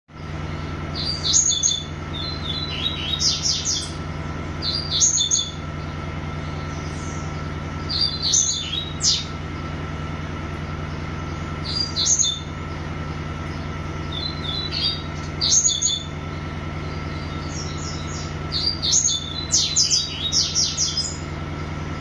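Caged songbird singing short, fast, high-pitched phrases, repeated every two to four seconds and coming close together near the end, over a steady low hum.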